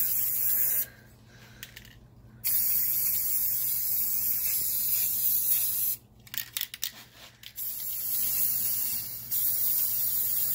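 Aerosol spray paint can hissing steadily as paint is sprayed onto water, in long bursts. The spray breaks off about a second in and again around six seconds in, with a few sharp clicks during the second break.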